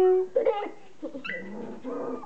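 Three-week-old standard poodle puppies whimpering and yipping: a held whine that stops just after the start, then short yelps and squeaks.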